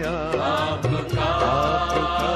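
Hindi devotional song: a voice sings a wavering, ornamented run without clear words over steady instrumental backing and regular light percussion.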